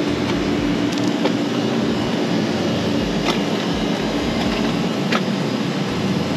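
A steady mechanical drone with a faint hum, and wind buffeting the microphone now and then.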